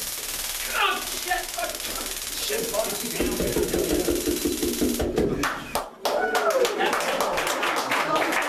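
A Taser firing its cycle into a person, a dense rapid electric crackle that cuts off suddenly about five seconds in, with a man's voice crying out over it. Voices follow after the crackle stops.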